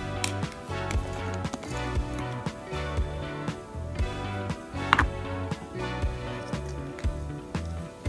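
Background music with a steady beat and held notes over a repeating bass line. A single sharp click stands out about five seconds in.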